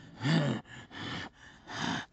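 An animated character's voice panting: a short groan near the start, then three breathy gasps for air, as of someone collapsed and exhausted.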